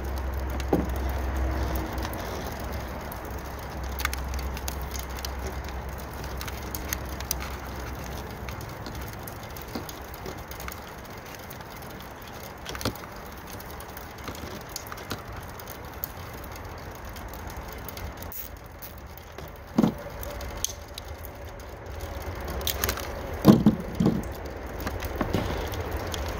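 Handling noise from wiring work at a pickup's third brake light: scattered light clicks and rustles as a loose coil of wire is bundled and tied off. A low rumble runs through the first eight seconds, and a few sharper knocks come near the end.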